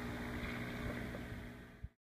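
Steady low hum of a small air pump aerating a hydroponic reservoir. It fades and cuts off shortly before the end, just after a faint click.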